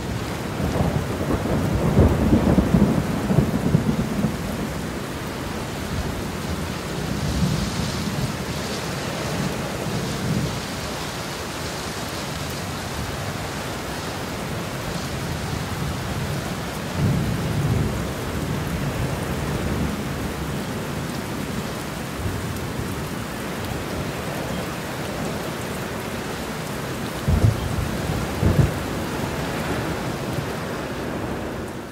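Thunderstorm sound effect: steady rain with low rolls of thunder swelling and fading several times, the strongest in the first few seconds and a couple of sharper claps near the end.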